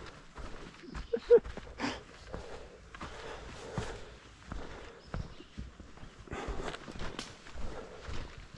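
Footsteps of a hiker walking on a dry, leaf-littered dirt trail: irregular crunches and soft thuds.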